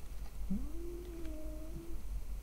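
A single faint drawn-out call that rises at first and then holds one pitch for about a second and a half.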